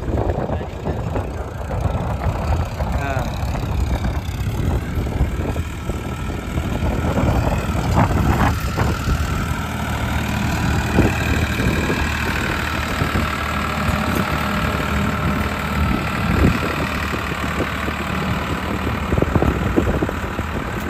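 Farmtrac 60 tractor's diesel engine running steadily while pulling a harrow, with a few sharp knocks along the way.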